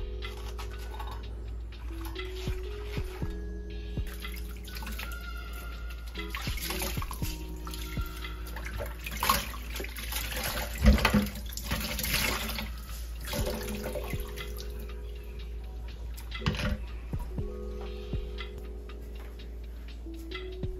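Water splashing and dripping in a stainless steel sink as a wet cloth is rinsed and wrung out, loudest around the middle, over soft instrumental background music with slow held notes.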